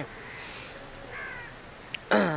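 A crow cawing once, briefly and faintly, a little past a second in.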